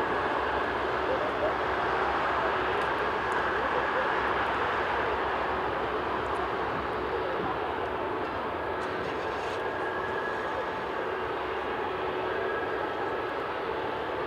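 Airbus A380-841's four Rolls-Royce Trent 970 turbofans running at low taxi power as the airliner rolls toward the runway: a steady jet hum with a faint constant whine, easing a little in the second half.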